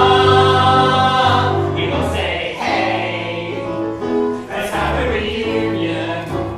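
Mixed ensemble of male and female voices singing together in a stage musical number. A loud chord is held for about the first second before the voices move on.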